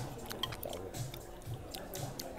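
A person chewing a mouthful of roast duck close to the microphone, with soft chews about twice a second and small sharp clicks of cutlery against the plate.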